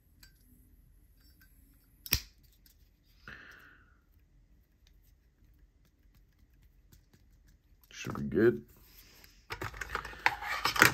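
A lighter lid snapping shut with one sharp click about two seconds in, then quiet handling of a strap and small screw hardware. Near the end comes a brief hum from the person, followed by clattering as objects are picked up.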